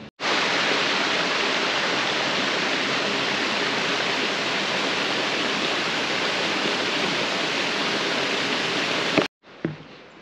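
A steady, even rushing noise like falling water. It starts abruptly and cuts off sharply shortly before the end.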